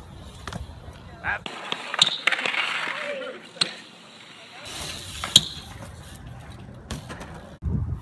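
BMX bike riding on concrete: tyres rolling, with several sharp knocks of landings and of the bike hitting ledges, and a stretch of scraping in the middle.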